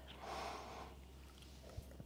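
A faint breath, a soft exhale, from a woman mid-rep in a floor crunch exercise, with a short tick near the end over a low steady hum.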